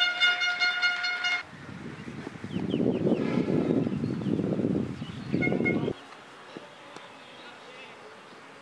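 A horn sounds one steady toot lasting about a second and a half. Then come about four seconds of loud, close rumbling noise mixed with voices, broken by a second short toot near its end.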